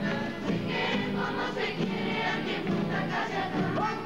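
A large group of young voices singing together in chorus, accompanied by many strummed classical acoustic guitars.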